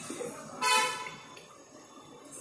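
A single short, loud honk of a vehicle horn, about half a second in, held steady for under half a second.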